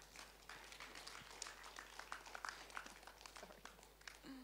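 Faint, scattered clicks and taps, several a second and irregular, over the low hush of a large hall.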